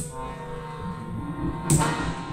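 Bayan (chromatic button accordion) holding sustained chords, with two sharp percussion strikes, one right at the start and one near the end.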